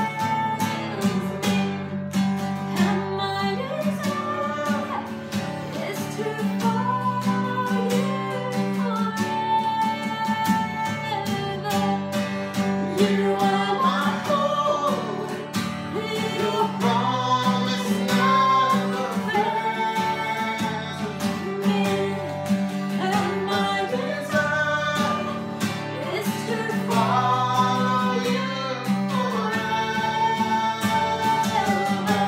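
A woman singing a slow worship song over a strummed acoustic guitar.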